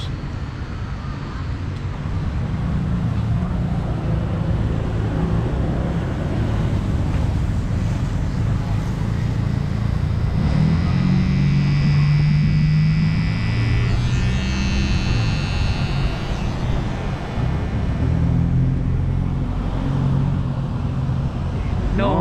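Electric hair clippers running while cutting a man's hair, loudest for several seconds in the middle, over a steady background of outdoor traffic.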